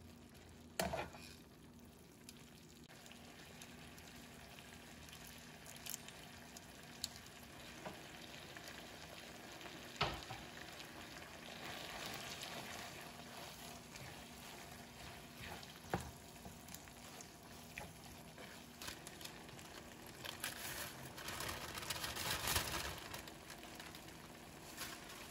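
Tomato meat sauce sizzling in a frying pan as spaghetti is tossed and stirred through it with tongs and a wooden spatula. A few sharp clacks of the utensils against the pan are heard, and the stirring grows louder near the end.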